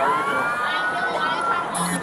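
An emergency-vehicle siren wailing, its pitch gliding slowly upward, over background voices and traffic noise, with a short electronic beep near the end.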